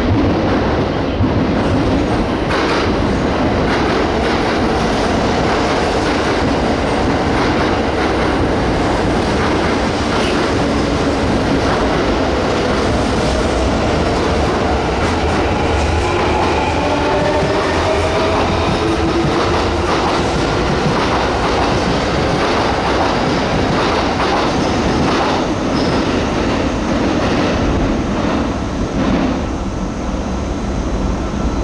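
A Kintetsu 9820 series electric train running along an underground station platform: steady rolling noise with wheels clattering over rail joints, echoing in the enclosed station. A whine that glides in pitch comes through midway.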